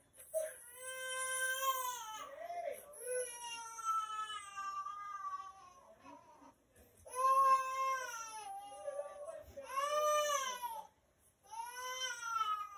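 An infant crying in a string of long, high wails, about five of them, broken by short catches of breath; one wail near the middle holds for about three seconds.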